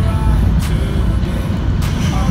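Steady low rumble of a moving train heard from inside the carriage, with two sharp knocks, one well under a second in and one near the end. Background music plays over it.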